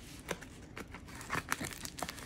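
Plastic bubble mailer crinkling and crackling as it is handled, in short irregular bursts that come more often in the second half.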